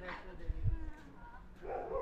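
An animal's short yelping call that falls sharply in pitch, followed by a brief low rumble on the microphone and another short call near the end.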